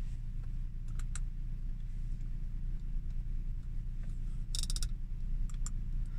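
Clicks from an Audi S5's MMI infotainment controls being operated: two clicks about a second in, a quick run of clicks at about four and a half seconds, and two more near the end, over a steady low hum in the car's cabin.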